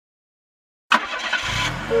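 Cartoon car sound effect starting suddenly about a second in: a burst of hiss over a low running engine, then a two-tone car horn honk right at the end.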